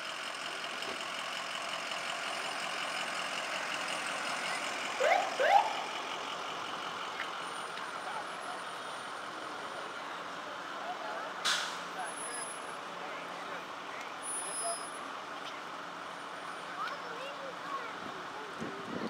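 Slow-moving parade vehicles passing: an ambulance, then a pickup truck towing a trailer, with a steady engine and road hum. Two short rising whoops come about five seconds in, and a single sharp click around eleven seconds.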